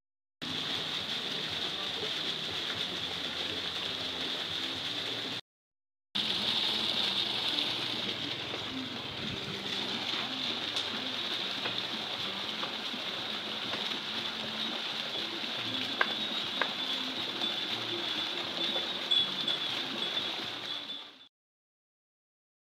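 Steady outdoor ambience beside a concrete irrigation canal: water running in the canal, with a steady high-pitched drone over it and a few faint clicks. The sound cuts off shortly before the end.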